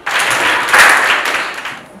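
A classroom of children clapping in applause, starting suddenly, loudest about a second in and dying away near the end.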